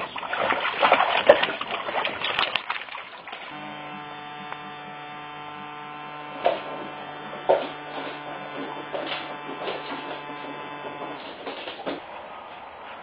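Water splashing and sloshing in a paddling pool as two dogs wade through it. After about three seconds this gives way to a steady electrical hum, broken by a few sharp clicks.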